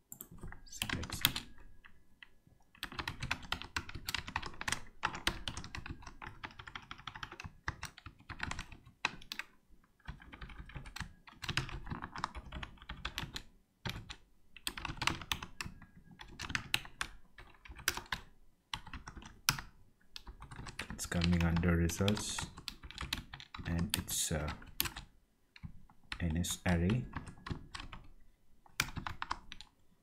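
Typing on a computer keyboard: quick runs of keystrokes broken by short pauses, as a line of code is entered. A brief low murmur of a voice comes about two-thirds of the way in and again near the end.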